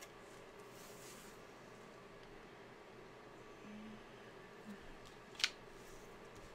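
Quiet handling of paper stickers and a planner page, with soft rustling about a second in and one sharp click about five and a half seconds in.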